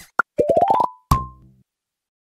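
Animated logo sting: a single short pop, then a quick run of short pitched notes stepping upward, ending on a low thump with a brief ringing note that fades away.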